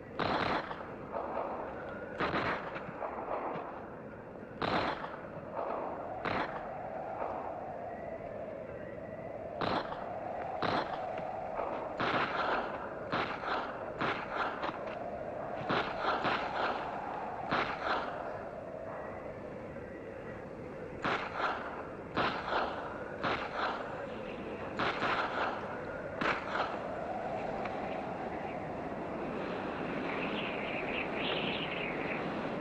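Rifle shots fired at will, about two dozen single reports and quick clusters at irregular intervals, over a continuous background din that swells and fades.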